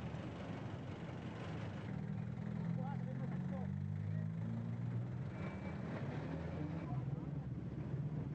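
Quiet outdoor background: a vehicle engine running, louder in the middle stretch, under faint voices.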